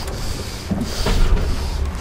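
Boat noise at sea: a steady low rumble with wind on the microphone, and a couple of brief knocks about a second in.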